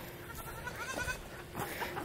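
Goats bleating faintly, a couple of wavering calls in the pen.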